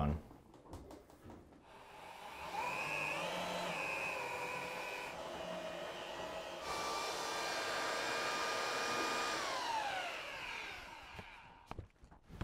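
Handheld electric paddle mixer running as it stirs a wet sand, cement and lime plaster mix in a plastic tub. It speeds up about two seconds in, holds a steady whine, then slows with a falling pitch near the end.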